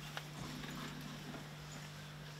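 Hushed room with a steady low hum and a few faint clicks and rustles.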